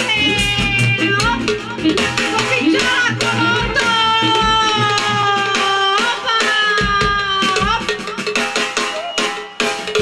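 Live Balkan brass band playing: trumpets and saxophone carry a held, sliding melody over a steady drum beat.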